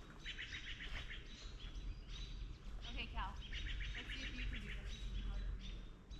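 Wild songbirds singing and chirping, with two runs of rapid trills and a short call that falls in pitch about three seconds in, over a steady low rumble.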